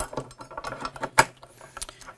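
Panasonic GH5 camera body being slid into an aluminium cage: a string of small clicks and knocks of the camera against the metal, with one sharp, louder click about a second in.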